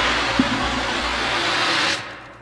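Steady rushing hiss of noise in the song's slowed, reverb-heavy outro, with one small click, cutting off suddenly at the end.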